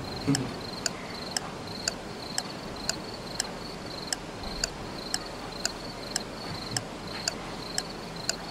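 Cricket chirping, short high chirps repeating evenly about twice a second: the comic 'crickets' sound effect marking an awkward silence.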